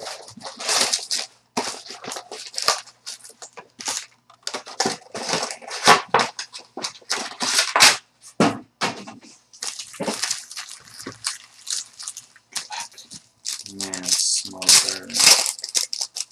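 Plastic wrapping on a box of baseball cards being cut, torn open and crinkled, heard as a run of irregular sharp rustles and crackles.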